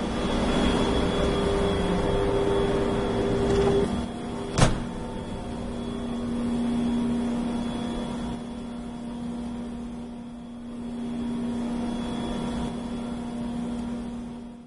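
Snowmaking equipment running with a steady mechanical hum and held tones; the pitch of the main tone drops about four seconds in, and there is a single sharp click just after.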